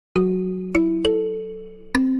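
A short intro jingle of four struck notes at different pitches, each starting sharply and ringing on so that they overlap: the first just after the start, two more close together around the middle, and a fourth near the end.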